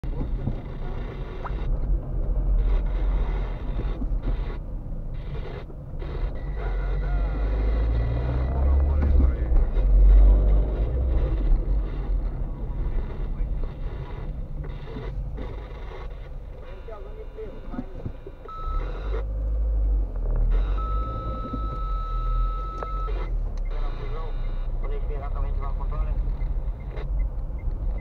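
Low engine and road rumble inside a moving car's cabin. A short high beep sounds about 19 seconds in, then a steady beep lasting about two seconds just after.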